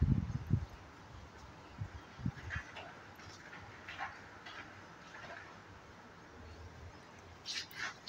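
Kittens tussling on a fabric blanket, with a few loud low thumps in the first half-second and soft scratchy rustles of fur, claws and cloth after that, brighter near the end.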